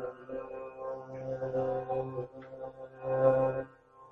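Recorded Hindustani classical vocal: a singer holding and bending long notes over a steady drone, part of a track for finding the sa (tonic). The voice is loudest a little after three seconds in and stops just before the end, leaving the drone faint.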